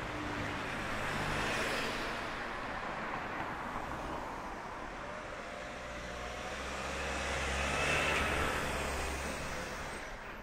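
Road traffic: cars driving past close by, their tyre and engine noise swelling as each one passes. One passes about a second and a half in, and a louder one near the end, with a low engine hum underneath.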